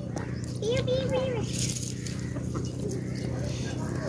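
Backyard chickens crowding round scattered feed, with one short call about a second in and light scratching and pecking sounds.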